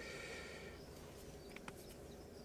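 Quiet car-cabin room tone, with two or three faint clicks about one and a half seconds in.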